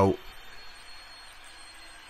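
A man's narrating voice finishes a word, then a pause of faint, steady background noise with no distinct sound in it.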